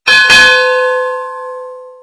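Notification-bell 'ding' sound effect as the subscribe bell icon is clicked: a bright bell struck twice in quick succession, then ringing out and fading over about two seconds.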